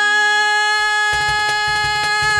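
Carnatic fusion music: a single long note held perfectly steady over a drone. About halfway through the drone drops out and low percussion and bass come in beneath the held note.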